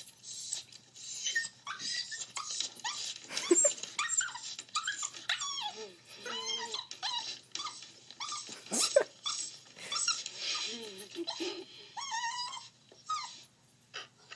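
Puppy whining and crying, played back from a video through a device speaker: a long run of short, high, wavering whimpers and yelps, one after another.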